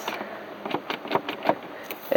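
Automatic gear selector of a 2011 Dodge Charger R/T being worked by hand in its gated console, giving a series of irregular sharp clicks from the lever and its detents.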